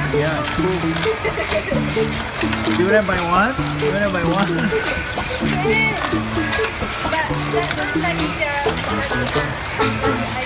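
Background music with a short repeating bass-and-melody pattern, with voices in the room around the middle and scattered light clicks and clatter of plastic toy track and die-cast cars.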